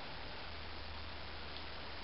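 Steady, even hiss with a low hum underneath: the recording's background noise, with no distinct sound from the liquid wax being squeezed out onto the card.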